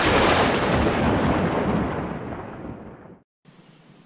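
A boom-like intro sound effect: a sudden hit followed by a noisy rumble that fades over about three seconds and then cuts off.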